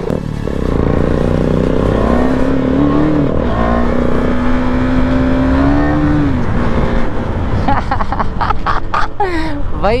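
KTM 390 Duke single-cylinder engine accelerating hard: the revs climb, drop at a gear change about three seconds in, climb again, then fall away as the throttle closes around six seconds, over road and wind noise. A man's voice comes in near the end.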